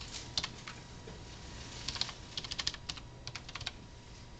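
Typing on a computer keyboard: a few keystrokes, then a quick run of keys about halfway through and a few more near the end, entering a filename at a load prompt.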